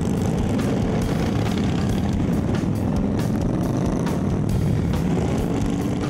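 Cruiser motorcycles riding along a road, engines running steadily in a dense low rumble.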